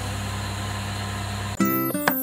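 A steady low hum, then about one and a half seconds in, music with plucked guitar-like notes starts abruptly and is the loudest sound.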